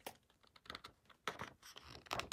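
Faint handling of a hardcover picture book: a few soft taps and paper rustles as fingers shift on the pages and cover. One tap comes right at the start, then a cluster of them in the second half.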